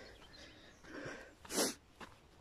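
A person breathing hard close to the microphone while walking uphill, soft breaths coming about every two-thirds of a second, with one short, sharp, forceful exhale about one and a half seconds in.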